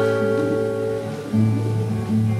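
Acoustic guitar playing alone between sung lines, its notes ringing on, with a new chord struck a little over a second in.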